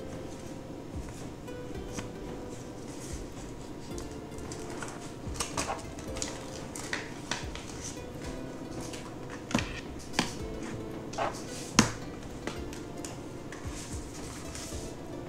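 Quiet background music throughout, with the crinkling and sharp clicks of a clear plastic bag of oscilloscope probe accessories being handled; the clicks come mostly in the second half, the loudest near the end.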